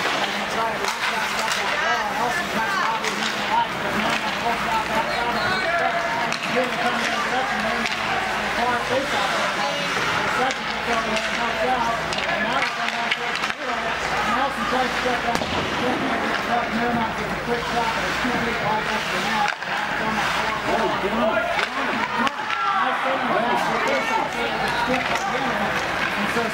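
Indistinct, overlapping talk of spectators in an ice rink, going on without a break.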